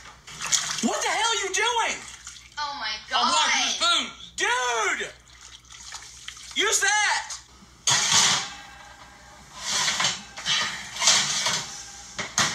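Excited, high-pitched voices crying out in long, drawn-out exclamations three times, then a few seconds of hissing noise near the end, over a steady low hum.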